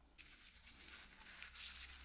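Near silence with faint soft rustling, a little louder in the second half: a paper napkin being rubbed over the tip of a filled plastic feeding syringe.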